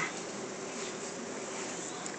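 A steady, faint buzzing hum with hiss, even throughout, with no distinct events.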